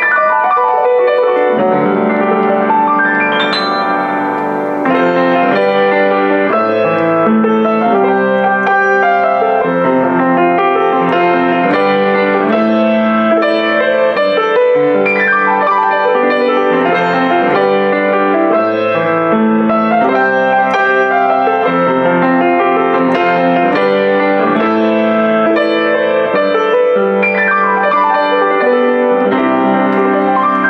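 Boston GP-156 baby grand piano being played in a continuous flowing passage of sustained chords, with rising runs up the keyboard about three seconds in and again near the end.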